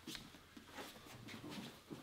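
Faint shuffling and soft contact sounds of two grapplers moving into position on a foam mat, a few light knocks scattered through.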